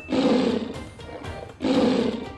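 Two short tiger-roar sound effects about a second and a half apart, over background music.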